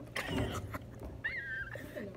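A woman's short, high-pitched squeal of laughter a little over a second in, falling slightly in pitch, with some rustle and bumps of handling just before it.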